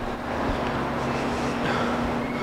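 Steady background hum and hiss with one constant low tone and no distinct events.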